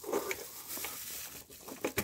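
A gloved hand works a steel locking pin into the high-pressure fuel pump's sprocket, locking it before the pump is pulled: faint scraping, a few small metal clicks and the rustle of a disposable plastic glove.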